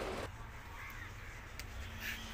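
A crow cawing faintly over quiet outdoor background; the louder background noise cuts off suddenly just after the start.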